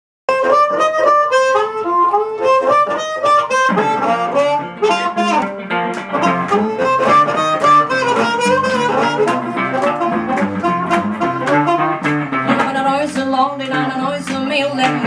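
Blues harmonica, cupped in the hands, playing a solo riff for the first few seconds; then a guitar and the rest of the band come in under it in a driving rhythm.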